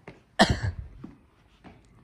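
A single loud cough close to the microphone about half a second in, followed by a few faint footsteps.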